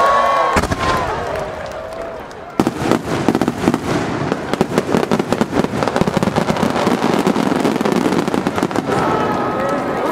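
Starmine fireworks display: a dense, rapid volley of shell bursts, many per second, that starts suddenly about two and a half seconds in and runs on until near the end.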